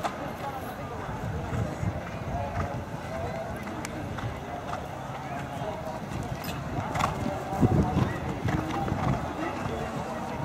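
Indistinct chatter of nearby spectators over a steady low outdoor rumble, with a louder stretch about three-quarters of the way through.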